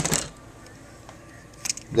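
A man's voice finishing a word, then a pause with only faint room tone, broken near the end by a single short click as a hand picks a plastic wire stripper up off the table.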